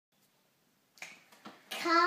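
Near silence, then two sharp clicks about a second in and half a second apart, followed near the end by a young boy's voice starting on a steady held note.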